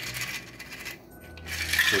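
Stainless steel cocktail shaker rattling and clinking as the drink is poured out of it into martini glasses, with a louder jingle near the end as the shaker is lifted away.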